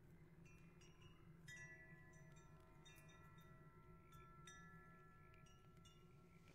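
Faint wind chimes tinkling, struck irregularly about nine times, their clear tones ringing on and overlapping, over a low steady hum.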